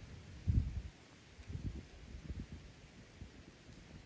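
Wind buffeting the microphone in low, irregular rumbling gusts, the strongest about half a second in.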